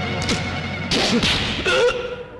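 Film fight sound effects over the background score: a sharp punch-like hit with a swish about a second in, then further loud crashing impacts near the end as a man goes down to the floor.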